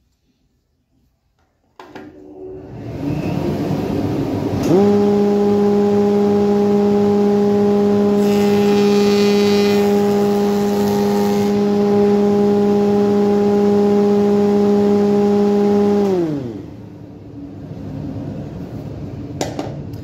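Spindle moulder with a CMT cutter head starting up about two seconds in and spinning up to a steady running tone. Midway, a hardwood piece is fed past the cutters for about three seconds, cutting a 22.5-degree bevel, described as a nice smooth cut. Near the end the machine is switched off and its pitch falls as it spins down.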